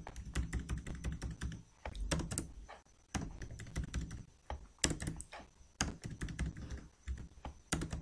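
Computer keyboard keys pressed in quick, irregular clicks, some with a dull thump, as text is typed and deleted.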